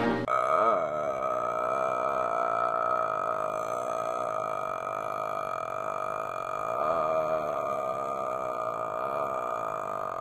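A man's voice holding one long, steady "uhhh" filler sound without a break.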